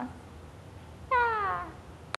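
A small pet's single short cry, falling in pitch, about a second in.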